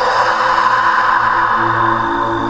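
Eerie background music: a steady swelling drone with held notes, lower tones joining near the end.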